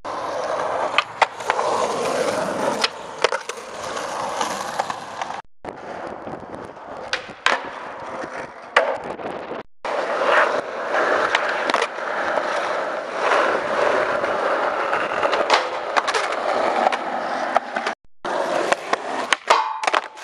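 Skateboard wheels rolling over concrete, with sharp clacks of the board hitting the ground and landing. The sound breaks off abruptly a few times where the takes are cut together.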